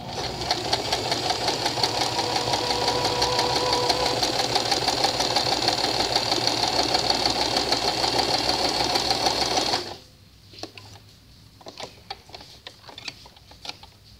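Domestic sewing machine running steadily at speed, sewing a zigzag overcast stitch along a fabric edge, then stopping abruptly about ten seconds in. Faint fabric and thread handling follows.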